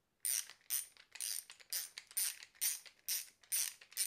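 Torque screwdriver clicking as circuit-breaker terminal screws are done up to the required torque: a steady run of short, sharp clicks about twice a second.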